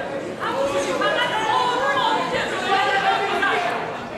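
Several voices chattering at once, spectators talking among themselves in a large sports hall, with no single clear speaker.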